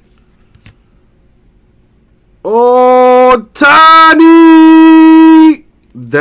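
A man's loud, drawn-out excited yell in two parts, starting about two and a half seconds in: a short cry, then a longer held note of about two seconds. Before it there is only a faint click of cards being handled.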